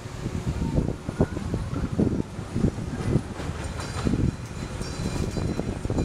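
Kiddie roller coaster train rattling and rumbling along its steel track, a dense run of irregular knocks, with some wind on the microphone.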